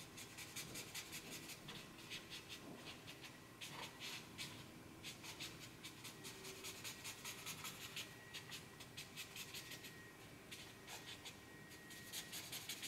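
Faint, quick scratching of a black ink pen sketching short strokes on paper, several strokes a second with a few brief pauses.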